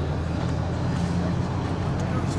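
A steady low, pitched hum, like an engine or machine running, with no speech over it.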